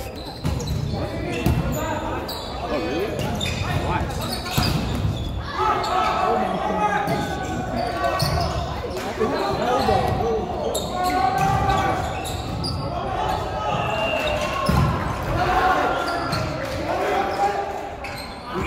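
Volleyball rally in a gymnasium: repeated sharp slaps of the ball off players' arms and hands, with players shouting and calling through the play.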